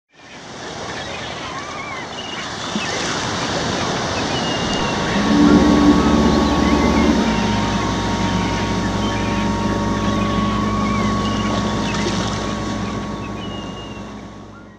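Ocean surf sound effect with short high calls scattered over it, fading in at the start. A deep steady tone joins about five seconds in and holds until it all fades away near the end.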